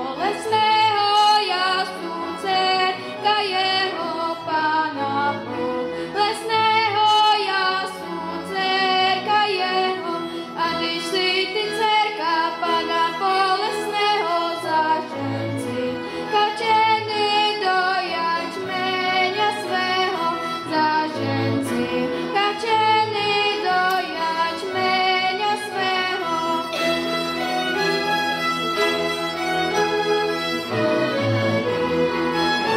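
A girl singing a Czech folk song with a cimbalom band: violins, double bass and cimbalom accompanying her.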